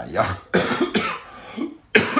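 A person coughing, with a couple of rough coughs in the first second and quieter breath noise after.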